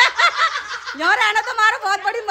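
Women laughing loudly: a run of quick, high laughter pulses, then a rising, laughing exclamation about a second in.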